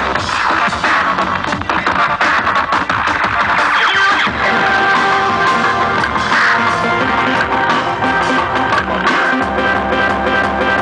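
Live electronic dance music with a drum kit played fast: dense drum and cymbal hits over electronic backing, with held tones coming in about halfway.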